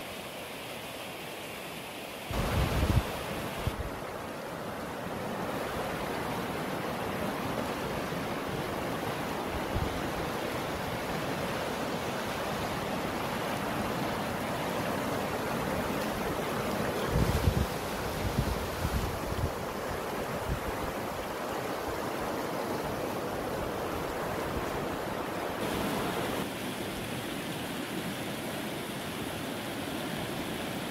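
Silty glacial meltwater river rushing over stones in a steady rush. Wind buffets the microphone briefly about two or three seconds in and again a little past halfway.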